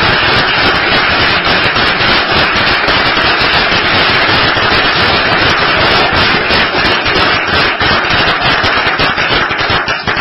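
Loud, steady applause from a roomful of people, a dense mass of hand claps.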